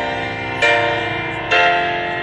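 Background keyboard music: held chords, changing to a new chord about every second.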